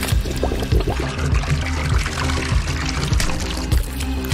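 Soda pouring and dribbling from an upturned crushed aluminium can into an open mouth, over background music with a steady bass line.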